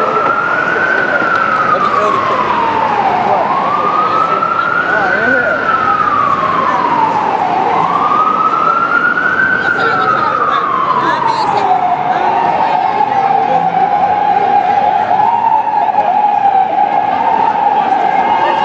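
Emergency vehicle siren wailing, its pitch slowly rising and falling three times about four seconds apart, then holding a nearly steady, lower pitch for the last third.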